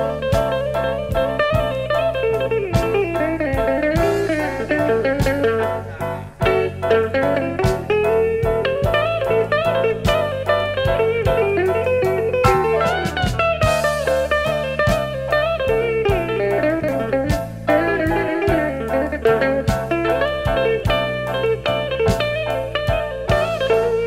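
Slow blues instrumental break: an electric guitar plays a lead line of bending, gliding notes over a steady slow band groove with drums.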